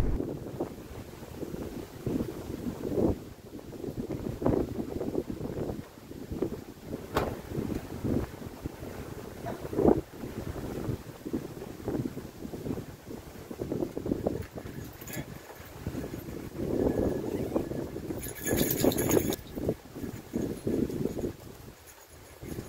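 Strong gusty wind buffeting the microphone, rising and falling in gusts, with a brief higher hiss about three-quarters of the way through.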